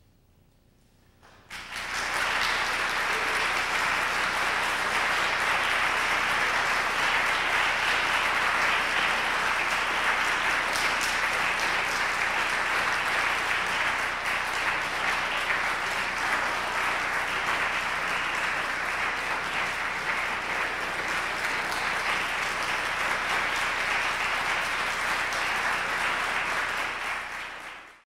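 Audience applauding after a solo violin performance, breaking out suddenly about a second and a half in after a short silence, holding steady, and fading away at the very end.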